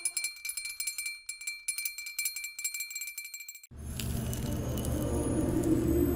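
Jingling percussion shaken in a quick, even rhythm as the last sung note of a choir dies away, fading over about three seconds. It then cuts off abruptly and a low, steady ambient music drone begins.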